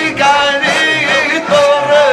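A man's voice singing a melodic Islamic zikr chant into microphones, with long held notes that bend and waver in pitch.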